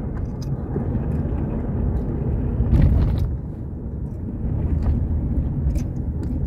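Low, steady rumble of road noise heard inside a moving car's cabin, with a brief knock about three seconds in.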